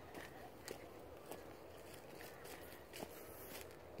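Faint footsteps on a walking track: a few soft, irregular steps over a low background hiss.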